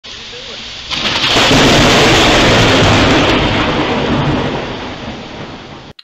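Steady rain, then about a second in a sudden, very loud thunderclap from a lightning strike that rumbles on and slowly fades. It cuts off abruptly just before the end.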